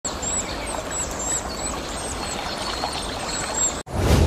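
Outdoor ambience of running water with small birds chirping now and then, cut off suddenly near the end.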